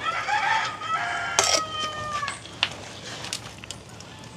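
A rooster crowing once, a call of about two seconds that ends on a long, slightly falling note. A ladle clinks against the pot about a second and a half in.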